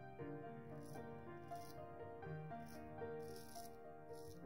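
Soft background music with long held notes, over four short, crisp scrapes of a Gold Dollar 66 full hollow ground carbon steel straight razor cutting through lathered stubble on the cheek.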